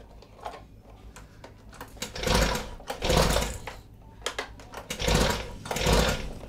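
Recoil pull-start of a small Honda petrol engine, the cord yanked about three times with a rattling, cranking whir each time, and the engine does not fire because its ignition switch is still off.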